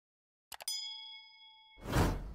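Animated subscribe-button sound effects: a quick double mouse click about half a second in, then a bright bell-like ding ringing for about a second, then a swelling rush of noise with a deep boom right at the end.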